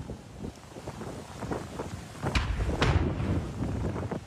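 Strong wind gusting and buffeting the microphone, with a low rumble that swells about two seconds in and two sharp cracks soon after.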